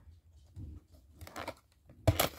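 Faint handling of a cardboard toy box: a few soft scuffs and taps as fingers work at its tuck flap, about half a second in and again near the middle.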